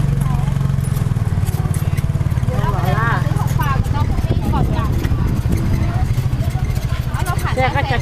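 Small motorcycle engine running steadily under load as it pulls a loaded sidecar, a low rapid chugging throughout, with people talking over it.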